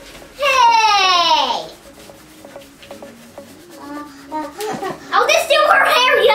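A child's voice gives one long call, about a second and a half, that slides steadily down in pitch. After it comes a quieter stretch with a few faint ticks, and children's voices start again near the end.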